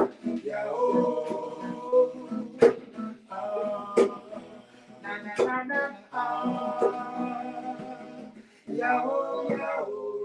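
A reggae vocal harmony group singing to a strummed acoustic guitar, with sharp strum accents, in a small room.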